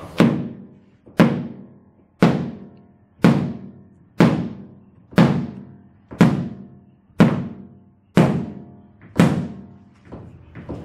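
A hammer striking an OSB panel coated with SuperFlex, ten blows at a steady pace of about one a second, each a sharp thunk with a short ringing decay.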